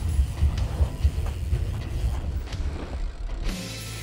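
Mountain bike being ridden on a packed-dirt jump track: uneven tyre-on-dirt and bike noise under background music. The bike noise stops about three and a half seconds in.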